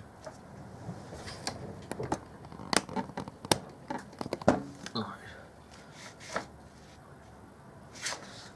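Handling noise: a quick run of sharp clicks and paper rustles as a camera is shifted over a paper instruction sheet, thinning out after about five seconds and going quiet near the end.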